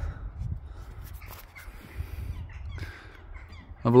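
A bird calling a few times over a low, steady rumble.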